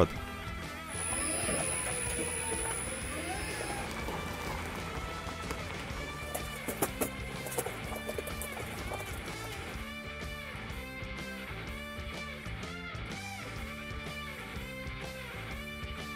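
Background music with a steady bass line.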